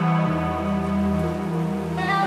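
Electronic music performed live from a laptop and pad controller: sustained synth chords over a deep bass, with a soft hiss like rain behind them.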